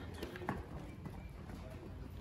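Hooves of several young cattle running across a dirt pen floor: a loose, irregular patter of low thuds, with one sharper knock about half a second in.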